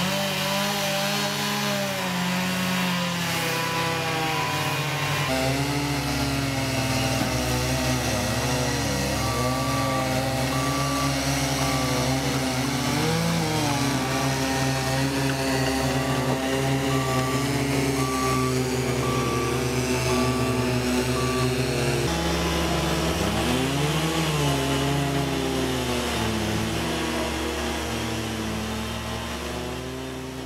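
A STIHL chainsaw cuts through a large white fir log round. Then a Cat compact track loader's diesel engine revs up and down as it carries the round, with a short beep repeating about once a second through the middle. The sound fades out at the end.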